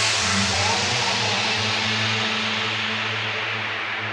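Progressive house music in a beatless stretch: a steady low bass drone under a bright wash of hiss whose treble slowly fades away, the whole getting gradually quieter.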